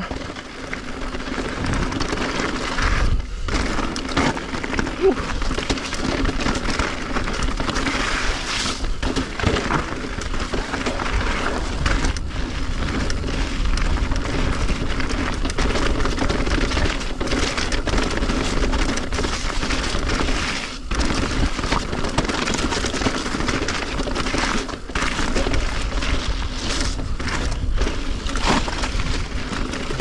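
Electric mountain bike's tyres rolling fast over a rocky gravel trail, with a constant crunching rattle of stones and bike parts, wind buffeting on the camera, and a faint steady hum underneath.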